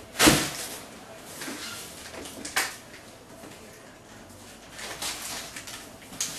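Cardboard boxes being handled on a table: a sharp knock about a quarter second in, a second knock about two and a half seconds in, and faint scraping and rustling of cardboard between.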